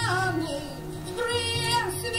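A woman singing long held notes, sliding down at the start and rising on a sustained note in the second half, over her own acoustic guitar.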